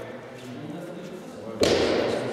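Background talk from several people in a large hall, then a single sharp knock about a second and a half in that echoes briefly.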